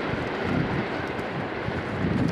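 Freight wagons rolling away along the track: a steady rumble of steel wheels on the rails, with a few faint high clicks.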